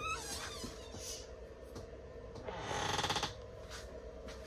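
Closet door's lever latch clicking, with a short squeak, then a rasping creak a little after halfway through as the door swings open.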